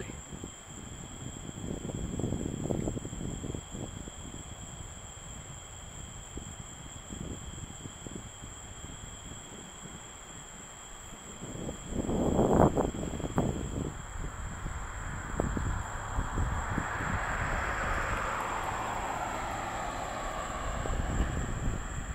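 Night insects, crickets, trilling steadily at two high pitches, over low rumble on the microphone with a brief loud burst of it about halfway through. In the second half a distant passing rumble swells and fades away.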